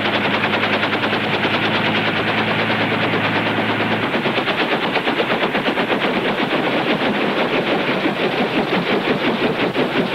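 Bell 47 helicopter running on the ground, its rotor beating in a rapid, even chop.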